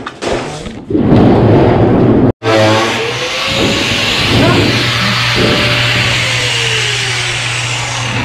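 Angle grinder running on 304 stainless steel sheet: a steady motor hum under a loud grinding hiss, with a short break about two and a half seconds in and a pitch that sinks for a couple of seconds near the end as the disc is loaded.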